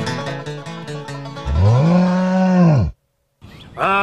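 Banjo bluegrass music trails off over the first second and a half. Then comes a long, low moo-like call that rises, holds and falls in pitch. After a short gap, a second, shorter call begins near the end.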